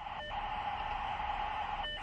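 Steady electronic hiss in the middle range, broken by a brief high tone and a momentary dip near the start and again near the end.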